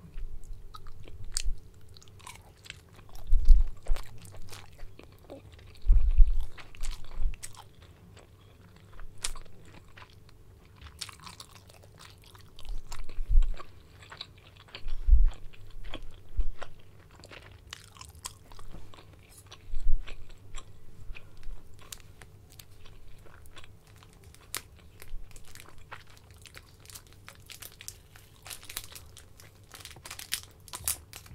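Close-miked chewing and biting of dim sum, in irregular bouts every few seconds with small wet mouth clicks between them.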